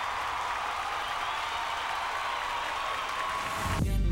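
Large audience applauding steadily. Just before the end, music with a heavy bass cuts in abruptly.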